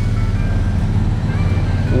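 A motor vehicle's engine running close by, a steady low rumble, with faint thin tones above it.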